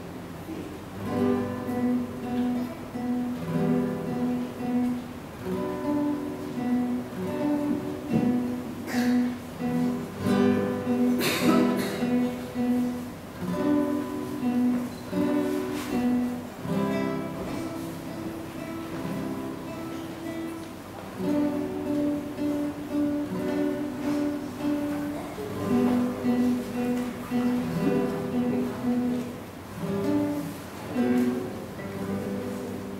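Two classical nylon-string guitars playing a duet, plucked notes with a repeating note figure. It drops to a softer passage a little past halfway, then picks up again.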